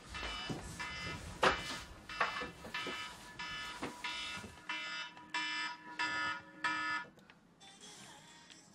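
Alarm clock beeping in short repeated pulses, coming in quicker, louder runs in the second half and stopping about a second before the end. It is going off to wake a sleeper who is not getting up. A few sharp knocks come in the first half.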